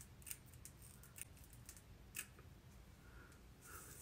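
Small scissors snipping through the lace of a lace-front wig along the hairline: a few faint, irregularly spaced snips.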